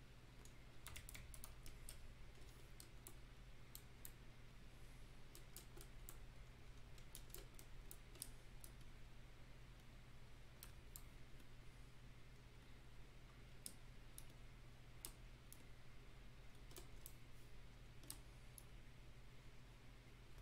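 Faint, irregular clicks of computer input at a desk, keyboard keys and pen or mouse taps, coming in scattered clusters over a steady low electrical hum.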